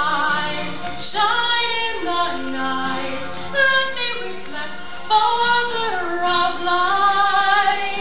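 Music with singing: a high voice sings a slow melody of long held notes, some sliding between pitches.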